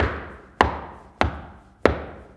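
High-heeled shoes clacking in slow steps: four sharp, loud heel strikes about 0.6 s apart, each ringing on in a large hall's reverberation.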